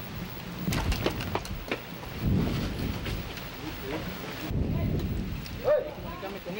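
A few sharp cracks of gunfire in quick succession about a second in, followed by two low rumbling reports. A man's voice starts near the end.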